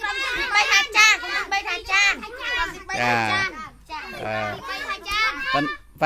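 Many young children's voices speaking and calling out at once, overlapping, with an adult's lower voice briefly about three seconds in and again a second later.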